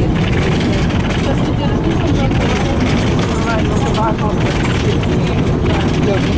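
Inside a moving LAZ-695N bus: its ZiL-130 V8 petrol engine running at road speed under a steady, loud rumble of tyre, road and body noise.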